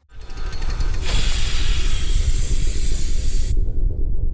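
A steady low rumble with a loud rushing hiss over it that starts about a second in and cuts off suddenly about three and a half seconds in.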